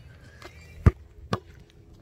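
Basketball bouncing on asphalt: two sharp bounces about half a second apart, the first a little under a second in.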